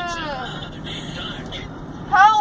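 A young woman's drawn-out, high-pitched whining cry slides down and fades in the first half second, leaving the steady road noise of a moving car's cabin.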